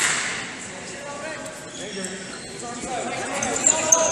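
Sounds of a freestyle wrestling bout in a large, echoing hall: a sharp slap as the wrestlers hand-fight at the start, scattered voices, and a couple of short high squeaks near the end as they tie up.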